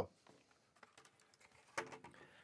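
Faint handling noise of a plastic router and its cable: a few small clicks, then a brief soft knock near the end as the router is set down on a desk.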